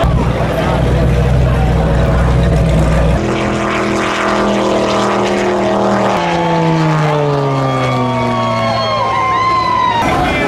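Racing powerboat engines running at high speed on passes, in three short sections that change abruptly. In the last, the engine pitch falls steadily as a boat goes by and moves away.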